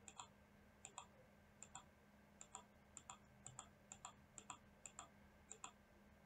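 A computer mouse button is clicked about ten times in an unhurried series, each click a quick double tick of press and release. A faint steady hum runs underneath.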